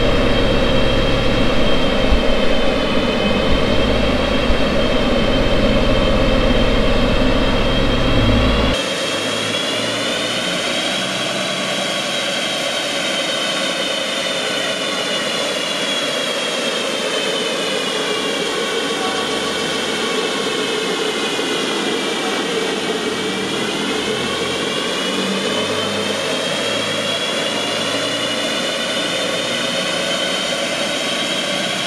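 Ford Fiesta ST's 1.5-litre turbo three-cylinder running on a rolling-road dyno, together with the dyno's cooling fan: a steady drone with a whine that slowly rises and falls in pitch. About nine seconds in, the sound drops a little in level and loses its deep rumble.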